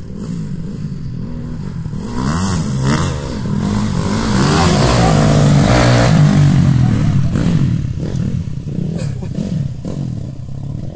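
Dirt bike engines revving up and down, pitch rising and falling with the throttle. They grow louder to a peak about halfway through, then ease off.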